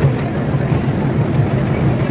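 An engine running with a steady, noisy rumble, heard close by as an illuminated parade float moves past.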